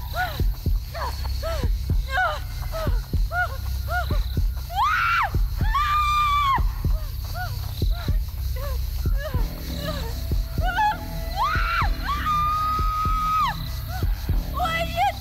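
A woman's voice in short, frightened gasping cries as she runs, about two a second, breaking twice into a held scream: once about five seconds in and again, longer, near the end. Low droning music runs underneath.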